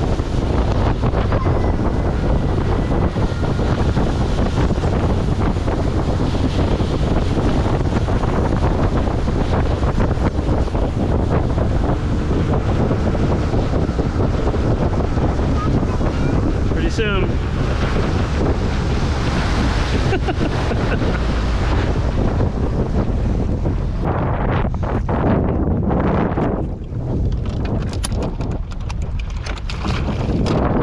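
Bass boat running at speed across a lake: wind buffeting the microphone over the rush of water past the hull. In the last several seconds the rush eases and breaks up as the boat comes off speed.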